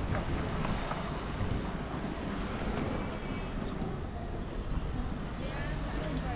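City street ambience: passing traffic and wind rumbling on the microphone, with faint voices of passers-by.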